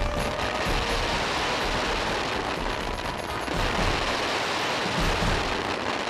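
Fireworks going off in a dense, continuous barrage of bangs and crackling, with music fading out in the first moment.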